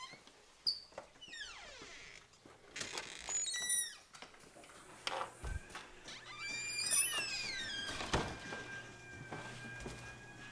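Door hinges squeaking in several squeals that fall in pitch, with knocks and a thud about eight seconds in.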